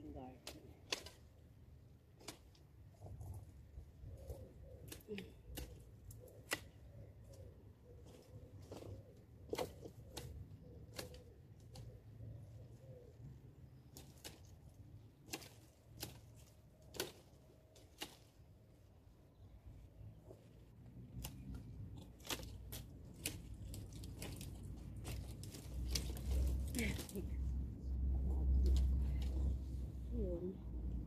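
Irregular sharp snaps and clicks of twigs and branches being cut with loppers and broken among dry brush. A low rumble builds toward the end.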